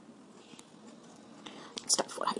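Low room noise, then near the end a sharp hiss and the start of a woman's quiet, half-whispered speech.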